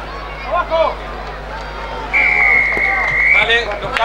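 A referee's whistle sounds one long, steady blast about two seconds in, over voices and shouting from the crowd.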